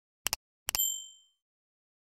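Subscribe-button animation sound effect: two quick double clicks like a mouse button, the second followed by a short bright ding that rings out and fades within half a second.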